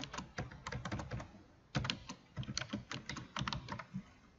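Typing on a computer keyboard: quick runs of keystrokes, a brief pause a little over a second in, then another run of keys.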